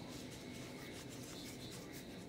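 Faint rubbing and rustling of a short-stretch compression bandage being wound around a foot and lower leg by gloved hands, over a cotton stockinette and foam padding.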